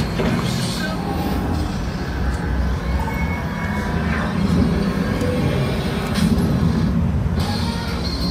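Steady low rumble of busy outdoor trade-show background noise, with music under it.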